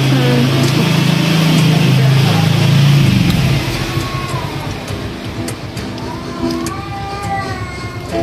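A motor vehicle's engine running close by, with a steady low hum that shifts pitch once or twice. It fades away after about three seconds.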